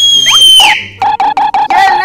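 A person whistling loudly to call a friend out of the house: one high, steady whistle ending about three-quarters of a second in, then from about a second in a lower held call broken by short gaps.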